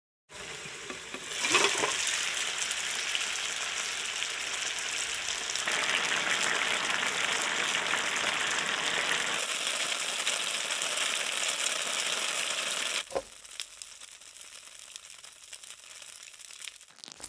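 Gyoza frying in a pan: a steady hissing sizzle that swells about a second and a half in and falls to a faint sizzle for the last few seconds.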